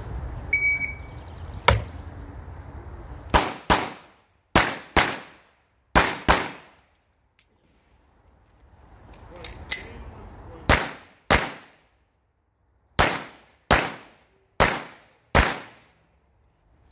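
A shot timer beeps once, then a pistol fires about a dozen shots, mostly in quick pairs about a third to half a second apart, with a pause of about four seconds in the middle while the shooter moves to a new position.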